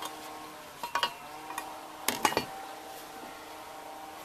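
A sheet-metal bracket being pulled out of a car engine bay by hand, knocking and clinking against the surrounding parts: two clusters of metallic knocks, about a second in and about two seconds in, with a faint metallic ring between them.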